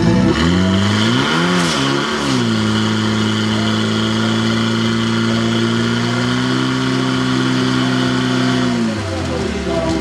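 Portable fire pump's engine revved up hard, its pitch wavering up and down for the first couple of seconds, then held at full throttle on a steady high note while it drives water out through the hoses to the nozzles. Near the end the engine drops back and its note falls.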